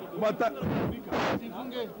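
Broken fragments of a man's voice through a microphone, with a short hissing burst about a second in.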